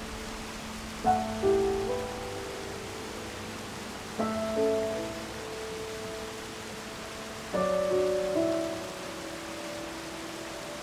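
Slow film-score music: a chord struck about a second in, again about four seconds in and near the end, each fading away. Under it runs a steady rush of water pouring over a weir.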